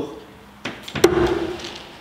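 A thrown steel throwing knife hits the wooden log-round target with a sharp thunk about a second in, followed by a brief ringing tone; a softer knock comes just before it.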